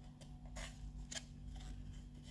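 Faint handling noise: a few light clicks as a small model tank is picked up and turned in the fingers, over a steady low hum.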